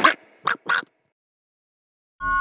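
Two short, quick cartoon poultry calls about half a second in, like quacks, after the tail end of a voice. Dead silence follows from just under a second in.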